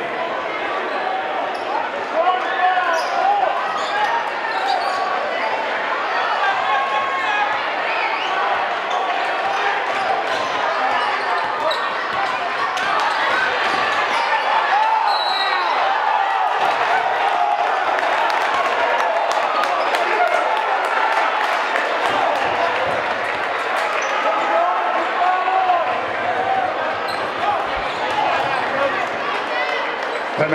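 Basketball game in a gym: a steady din of crowd voices and shouting, with the ball bouncing on the hardwood court and short sharp knocks scattered throughout.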